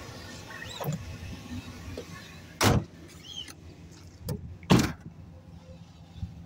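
Two loud thuds about two seconds apart, with a few lighter knocks, as someone climbs out through the open rear door of a van and steps down.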